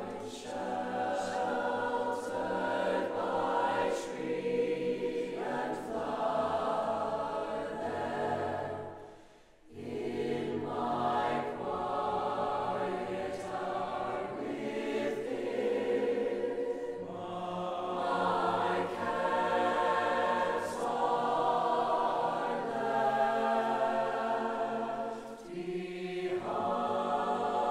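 Mixed-voice choir singing in a stone church, many voices in harmony. The sound fades to a brief pause about nine seconds in, then the full choir comes back in.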